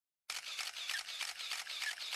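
Many camera shutters clicking in a rapid, irregular flurry, starting a moment in.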